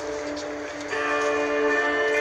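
Live street music heard across the square: held notes, with a step up to a new sustained note about a second in.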